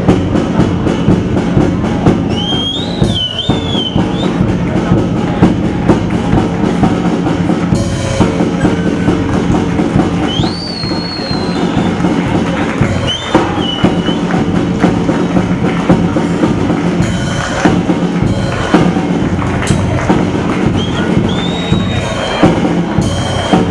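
A young child playing a drum kit in a fast, dense run of drum and cymbal hits over steady pitched backing music. A few high gliding tones rise above it now and then.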